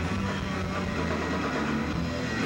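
Live rock band playing: electric guitar and bass holding low, sustained notes.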